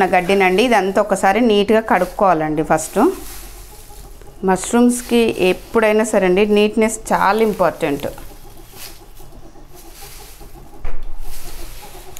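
A woman's voice for the first three seconds and again from about four to eight seconds. In between and afterwards comes the dry rustle of short-chopped paddy straw being stirred by hand in a steel bowl, louder near the end.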